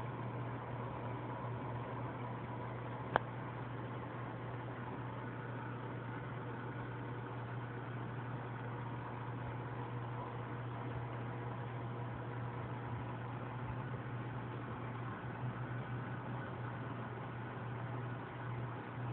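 Steady low hum and hiss of running aquarium equipment, with one sharp click about three seconds in.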